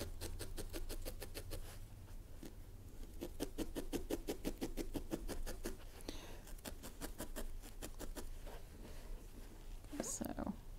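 Felting needle stabbing repeatedly through wool into a foam felting pad as an ear is felted onto a wool bear: a fast, even run of soft pokes, several a second, with a couple of short breaks.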